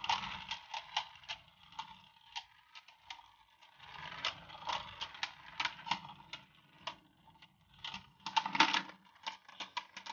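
Two Beyblade Burst spinning tops colliding in a clear plastic stadium: irregular sharp plastic clicks and clacks as they knock together, over a low rattle of their tips spinning on the stadium floor. The hits come thickest in a quick flurry near the end.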